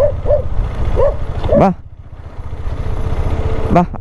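A dog giving four or five short barks in the first two seconds, over the steady low running of an idling motorcycle engine.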